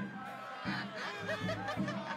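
A crowd of onlookers laughing and snickering over lively music with a regular beat.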